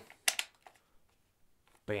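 A quick cluster of sharp clicks and a clack as a camera's quick release plate is slid into and locked on the rig's quick release base, followed by a fainter click.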